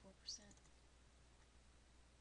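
Near silence: faint room tone after the tail of a spoken word in the first half-second.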